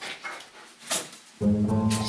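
Splashing and knocking in a bathtub as a common seal pup flails her flippers against a scrubbing brush, with a louder slap just under a second in. Background music with a plucked guitar comes in about halfway through.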